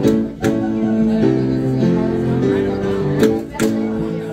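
Live instrumental accompaniment playing held chords, with two pairs of sharp hand claps, one pair at the start and another a little after three seconds in.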